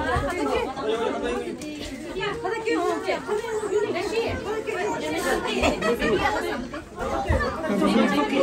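Chatter of several voices talking over one another, with a brief lull about seven seconds in.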